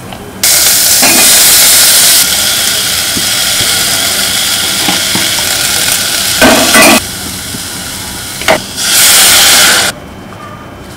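Hot oil sizzling loudly in a stainless steel saucepan as seeds and chopped tomatoes are fried for a spice tempering, starting suddenly about half a second in. A short clatter comes about two-thirds through, and the sizzling flares up again briefly near the end.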